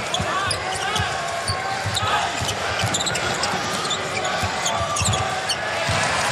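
Basketball being dribbled on a hardwood court, with sneakers squeaking now and then, over steady arena crowd noise.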